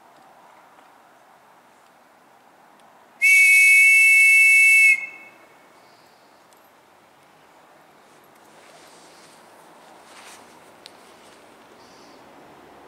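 Hand-blown whistle giving one long, steady, shrill blast of about a second and a half, two close pitches sounding together, a few seconds in. It is the signal that starts a minute's silence.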